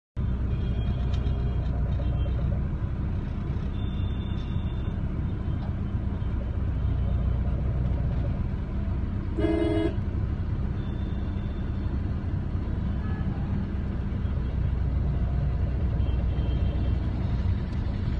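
Road traffic heard from a moving car, a steady low rumble of engine and tyres. A vehicle horn honks once, briefly, about halfway through.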